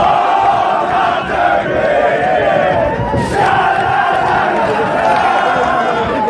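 Loud, continuous crowd of men shouting and chanting together in celebration, many voices overlapping.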